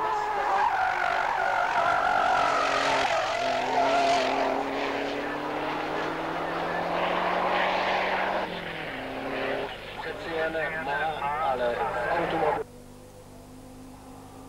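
Race car engine running hard up a hill-climb course, its revs falling and rising through gear changes as it passes. Near the end the engine sound cuts off abruptly, leaving a quiet steady low hum.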